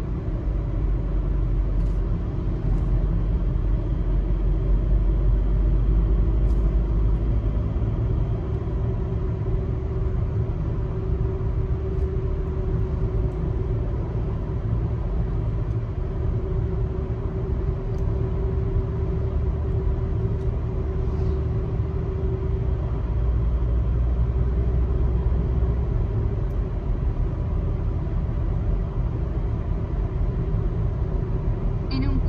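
Car driving at road speed, heard from inside the cabin: a steady low rumble of tyre and engine noise with a faint hum, swelling slightly twice.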